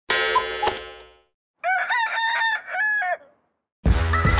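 A short sound with a sudden start that fades out over about a second, then a rooster crowing a cock-a-doodle-doo of several rising-and-falling syllables. Music begins just before the end.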